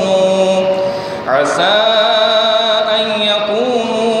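A man reciting the Quran in Arabic as a melodic chant, holding long, slowly bending notes. He takes a short breath just over a second in, then starts a new phrase.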